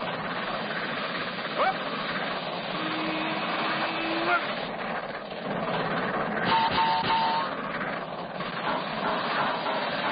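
Cartoon steam locomotive running flat out: a steady, loud rushing hiss. A brief rising glide comes near two seconds in, with short held tones around three to four seconds and again near seven seconds.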